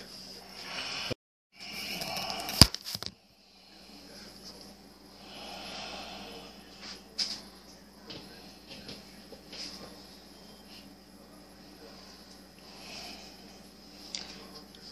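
Low room noise with scattered faint knocks and ticks. There is a brief cut-out about a second in and one sharp click a little later.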